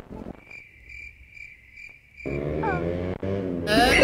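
Cricket-chirp sound effect, a regular chirp about twice a second that starts and stops abruptly: the comic 'awkward silence' cue. It gives way to a pitched sound with sliding notes, and music comes in near the end.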